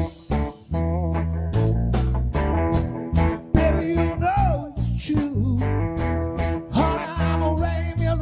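Live blues-funk trio music: electric guitar, bass guitar and drum kit playing together over a steady beat.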